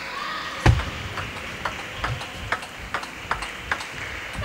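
Table tennis ball clicking back and forth off bats and table in a rally, roughly every half second, with one heavier thump about three-quarters of a second in. There is a short squeak near the start, over the steady hum of a sports hall.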